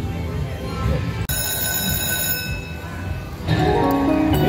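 Slot machine electronic sounds: bright ringing chime tones about a second in, then near the end the machine's loud win fanfare music starts as the Prosperity Jackpot super feature is triggered.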